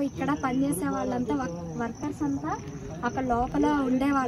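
A woman talking, with a faint, steady, high-pitched insect chirring underneath.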